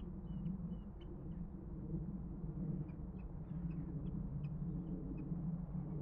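Faint, short high-pitched bird calls: a quick run of thin notes at the start, then scattered single ticks, over a steady low rumble.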